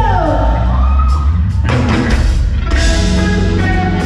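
Live pop-rock band playing with electric guitars, bass and drum kit, heavy low end throughout. A note slides steeply down in pitch right at the start.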